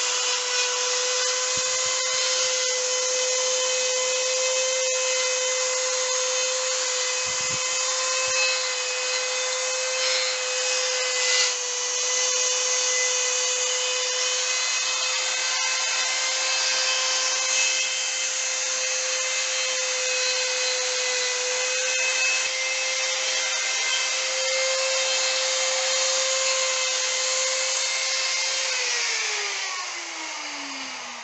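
Handheld electric rotary tool (die grinder) running at steady high speed with a high-pitched whine, its bit grinding and smoothing the resin of a sculpture's leg. Near the end it is switched off and the whine falls as it slows.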